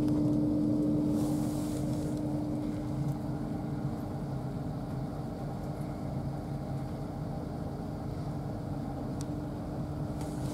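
Interior running noise of an LNER Azuma Class 801 electric train in motion: a steady low rumble with a steady hum that fades about two seconds in. A brief hiss comes at about the same time.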